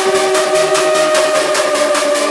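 Hardstyle electronic dance music in a breakdown: sustained synth notes over a fast, even pulse, with no kick drum or deep bass.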